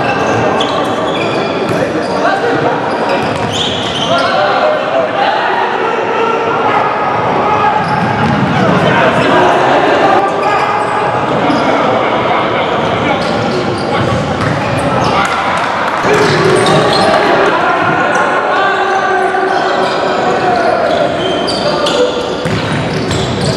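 Live futsal play in a large indoor sports hall: players' voices shouting and calling over each other, with the ball thudding on the wooden floor as it is kicked and passed, all with hall echo.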